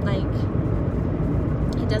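Steady low rumble of a car's engine and road noise heard from inside the cabin, with a brief fragment of a woman's voice near the start and her speech resuming near the end.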